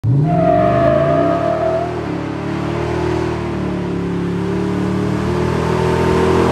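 2021 Chevrolet Silverado Trail Boss 6.2-litre V8 revving hard through a loud aftermarket exhaust in a burnout, its rear tires spinning. The engine climbs quickly at the start and then holds high revs.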